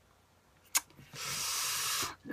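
A short click about three-quarters of a second in, then a steady breathy hiss lasting about a second near the end: a person's long breath through the mouth.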